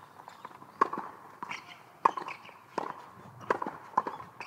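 Tennis rally on a hard court: a ball struck back and forth, about five sharp racket hits and ball bounces, each with a short ring, roughly a second apart.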